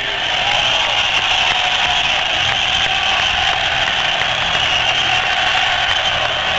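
Loud, steady wash of live rock concert noise, with no singing: a crowd roar mixed with amplified stage sound from the band.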